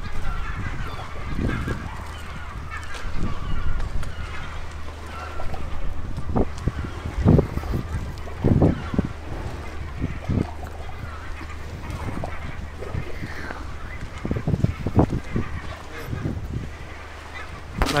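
Long wooden planks creaking and groaning in short, irregular strokes every second or two under a person balancing along them, over a steady low rumble.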